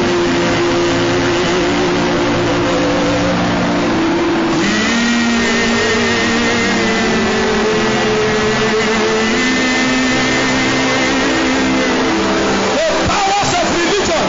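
A congregation praying aloud all at once, a loud continuous mass of many voices, over sustained keyboard chords that shift to new notes about every four to five seconds.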